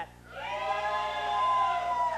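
A long, drawn-out shout of 'Yeah!', held at a fairly steady high pitch for more than a second and a half.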